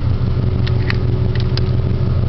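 Steady low rumble inside a car cabin: a Subaru flat-four swapped into a VW Super Beetle, idling while the air conditioning runs, with a faint steady hum and a few light clicks.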